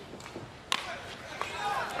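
A baseball bat hitting a pitched ball once, a single sharp knock about two-thirds of a second in, sending a comebacker to the pitcher, over faint ballpark ambience.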